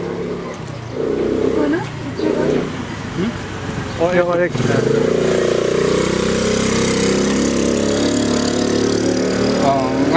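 A motor vehicle's engine running close by, coming in loud about halfway through and holding steady. Brief voices and a laugh come before it.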